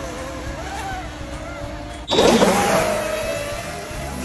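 Electric RC racing speedboats running flat out with a wavering motor whine. About two seconds in, one passes close in a sudden loud rush of motor and spray, its pitch falling as it goes by.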